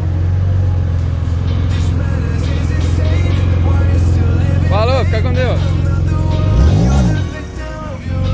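Porsche 911 flat-six engine running as the car pulls away at low speed, with one quick rev that rises and falls about seven seconds in. Background music with singing plays over it.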